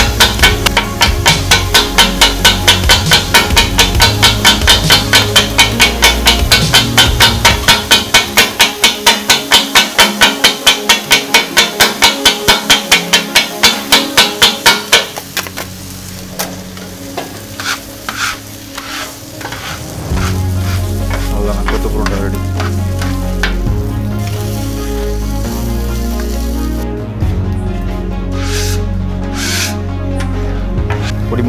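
Kothu parotta being chopped on a flat iron griddle with two metal blades: rapid rhythmic clanging, about four strikes a second. The chopping stops about halfway through, and a few lighter, scattered strikes follow. Background music runs underneath and is left on its own in the last third.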